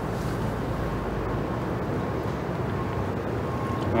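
Steady outdoor background noise, a low even rumble with no distinct events, typical of wind on the microphone and distant traffic.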